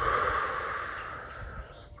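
A woman's long, audible breath out through pursed lips, close on a clip-on microphone. It starts sharply and fades away over about two seconds.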